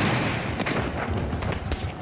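Battle sound of artillery fire: the rumble of a shell explosion dying away, with repeated sharp cracks of gunfire and shell bursts over it.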